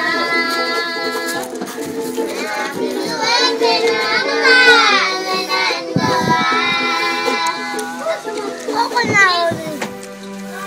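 A group of children singing together in long held notes, accompanied by a strummed ukulele.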